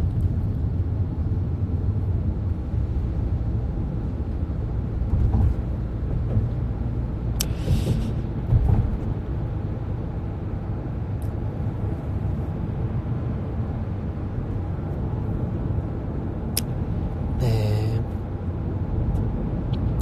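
Steady low rumble, with a short rustle about seven and a half seconds in and a brief murmur of a voice near the end.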